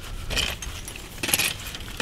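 Steel 220 body-grip trap and its chain clinking and jangling as the trap's spring is squeezed shut with trap setters. There are two short bursts of jangling, about a third of a second in and again around a second and a quarter.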